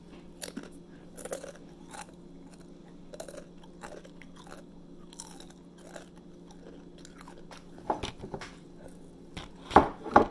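Close-up chewing of crunchy tortilla chips (Doritos), with many small crisp crunches and louder bites near the end. A faint steady hum runs underneath.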